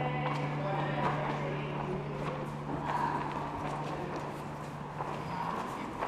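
The last low note of a live band's song ringing out as one steady tone that stops about five seconds in, over scattered light taps and quiet voices.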